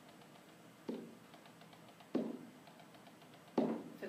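Three dull taps, each dying away quickly, landing about every second and a half: a hand tapping on an interactive whiteboard to change slides.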